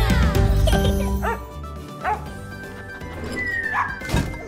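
Animated cartoon puppy barking and yipping a few times over children's background music. The music is loudest at first, and a short falling whistle tone comes near the end.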